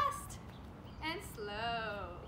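A woman's voice: a word ends right at the start, then about a second in comes one long, drawn-out, high-pitched call that rises and falls in pitch, like a move being called out in a sing-song way.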